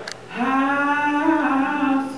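A woman singing solo into a microphone: one long held note that steps up slightly about a second in, starting the opening words of a slow song.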